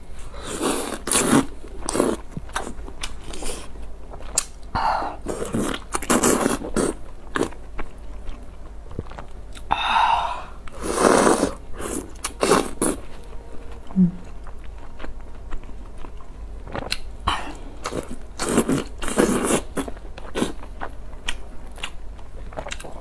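Close-miked mouth sounds of a person eating soft, broth-soaked food: wet chewing and biting in irregular bursts, with slurping as long strips are sucked in, the longest slurp about ten seconds in.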